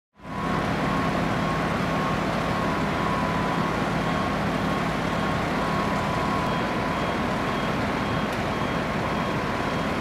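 Fire truck engines running steadily: an even, continuous drone with a low hum and a thin, steady high whine over it.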